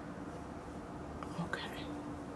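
Quiet room tone with a faint steady hum, and a softly spoken "okay" about a second and a half in.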